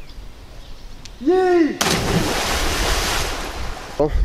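A single yell, then about two seconds in a loud splash as a person plunges from a bridge into a river, the rush of water slowly dying away.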